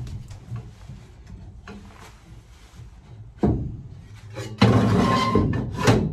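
Aluminium box-section frame knocked and shifted into place on a van's steel wheel arch. A sharp knock comes about three and a half seconds in, then near the end a longer metallic scraping clatter with a ringing note.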